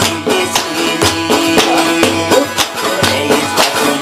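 Khowar folk music from a plucked Chitrali sitar, a long-necked lute, over a steady frame-drum beat of a few strokes a second.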